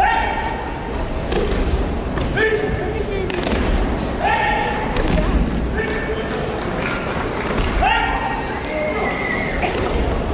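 Aikido breakfalls thudding and slapping on tatami mats, with short, high-pitched shouts four or five times, about every two seconds.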